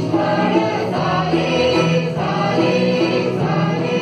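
Mixed choir of women and men singing a Marathi Christian song together, with acoustic guitar accompaniment.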